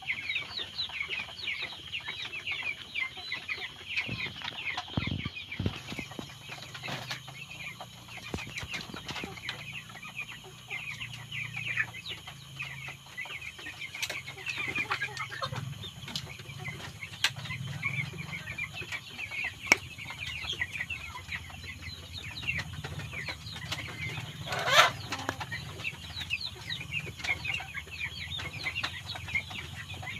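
A flock of broiler chickens in their shed, chirping and peeping continuously in a dense chorus, with one louder call about 25 seconds in.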